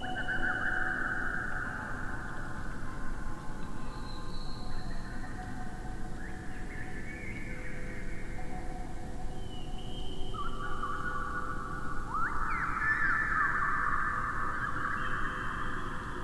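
Electroacoustic music made from slowed-down wind chime recordings: layers of a bamboo wind chime and a metal wind chime, pitched to key in partly with each other with mild dissonance. They sound as long, overlapping drawn-out tones that shift every few seconds, with a few quick pitch glides about three-quarters of the way through.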